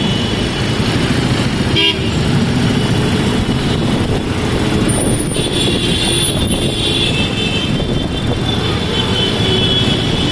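Busy street traffic: vehicles running and passing steadily, with vehicle horns honking. A short sharp click a little under two seconds in.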